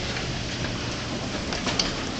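Steady low hum and whir of an Otis hydraulic passenger elevator, heard from inside the car.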